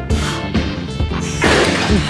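Background music with a steady beat of heavy hits, about two a second, and a noisy crash-like swell building near the end.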